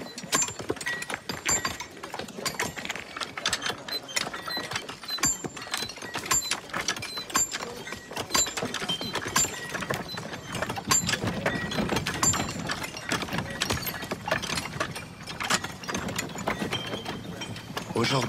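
Many irregular, overlapping knocks and clicks mixed with short metallic pings, dense throughout, with a low murmur swelling in the middle.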